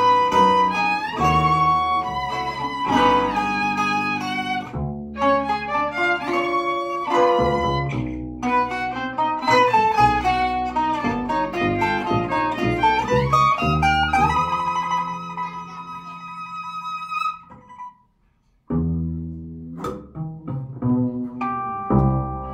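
Live free-improvised trio of violin, guitar and double bass: busy, overlapping plucked and bowed notes, then a long held high note from about fourteen seconds in. The music breaks off briefly just after, and the trio comes back in.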